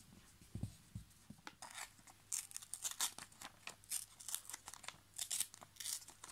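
Paper torn by hand in a series of short, irregular rips, starting about a second and a half in, after a couple of soft thumps of hands pressing on the notebook page.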